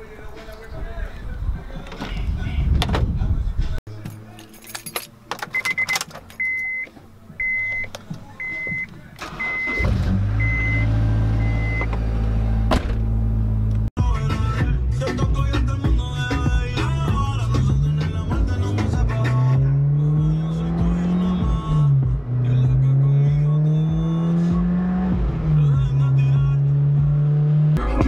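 A car's interior warning chime beeping about seven times at an even pace, then the engine of a Honda S2000 starts and idles. After a cut, the engine pulls away under acceleration, its pitch climbing and dropping back at two upshifts before settling to a steady cruise.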